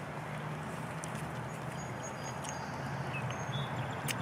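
Light rain beginning to fall: a steady soft hiss with a few scattered faint ticks.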